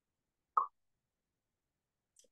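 Silence broken once, about half a second in, by a single short plop.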